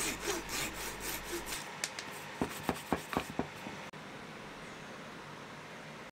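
Flush-cut saw rasping across the end of a 10 mm wooden dowel to trim it flush with an oak leg frame, in quick strokes about four a second. About two seconds in, a few sharp clicks follow, then only a faint steady hiss.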